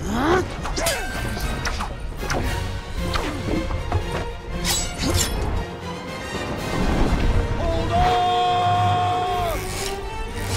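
Film action soundtrack: music mixed with repeated crashes and shattering impacts as crystal breaks apart. A rising sweep opens it, and a long held tone sounds near the end.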